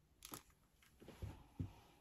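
A faint sharp click about a quarter second in, then a few soft, low knocks: small handling sounds.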